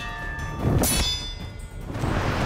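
Metallic ringing of a sword blade as it lodges in a tree trunk, fading within about half a second, then a second sharp metallic ring of a blade just under a second in. A film sound effect over background music.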